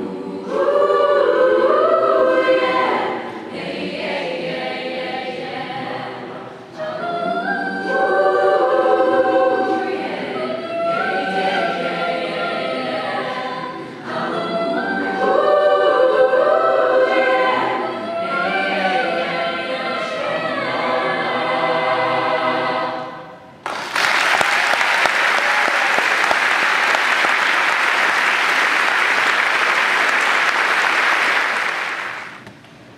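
Mixed choir singing in swelling phrases; near the end the song stops and the audience breaks into applause.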